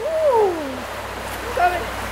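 A person's drawn-out exclamation falling in pitch, then a short call near the end, over the steady rush of creek water.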